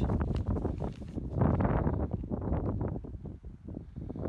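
Wind blowing across the microphone, gusty and uneven.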